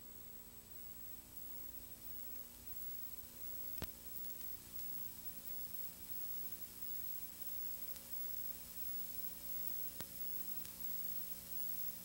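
Faint steady hiss and electrical hum of the recording's background, with no race call or crowd, and a faint click about four seconds in and another about ten seconds in.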